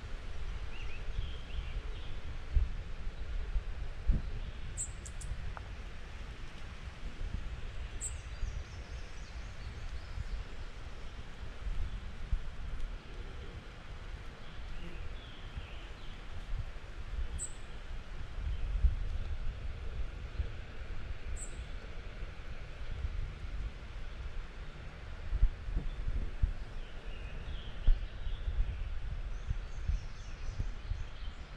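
Outdoor ambience: an uneven low rumble on the microphone, with a few short, high bird chirps scattered through it.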